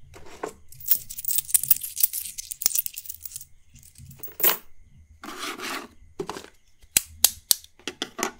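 Fast ASMR tapping and scratching by hand on small objects right next to a microphone: a couple of seconds of quick scratching and clicking, then short scrapes, and three sharp taps near the end.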